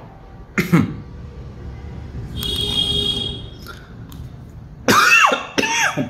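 A man coughs about half a second in. About two and a half seconds in, a high steady electronic tone sounds for about a second. Near the end there are louder voiced coughing and throat-clearing sounds.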